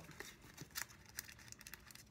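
Faint crinkling and tearing of packaging as a parcel is opened by hand, with scattered small clicks.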